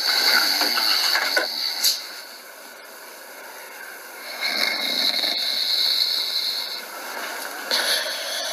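A sleeper's snoring: two long, rasping breaths about four seconds apart, thin-sounding because it is recorded off a screen's speakers by a phone.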